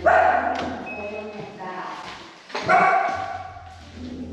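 Small dog barking twice, about two and a half seconds apart, each bark trailing off in a long echo off hard floors and walls.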